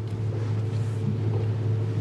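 Steady low electrical hum with a faint background hiss in the meeting-room sound system; nothing else happens.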